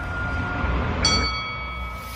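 Logo-sting sound design: a low rumble under a held tone, then about a second in a metallic bell-like chime that rings on and slowly fades.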